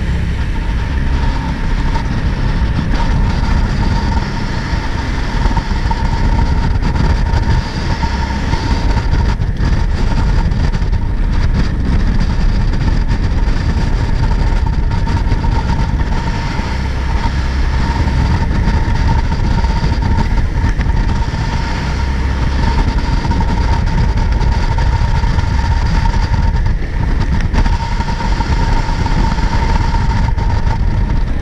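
Jet boat running at speed on a river: a loud, steady engine and water-jet rumble with a constant high whine over it, and the rush of water past the hull.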